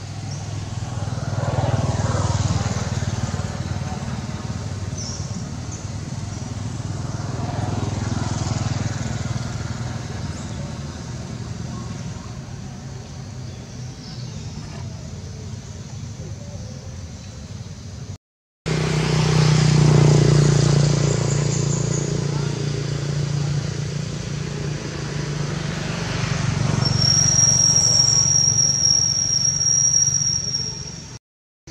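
Engine noise from passing traffic, a low hum that swells and fades several times, with a break to silence about two-thirds of the way through and a thin, high steady whistle near the end.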